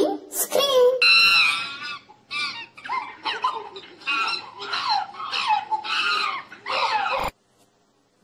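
Chimpanzee screaming: a run of high-pitched calls, about two a second, many sliding down in pitch, cutting off suddenly about seven seconds in.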